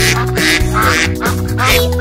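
Children's sing-along song playing, with 'beep, beep, beep' sung over a bouncy accompaniment and cartoon duck quacks mixed in.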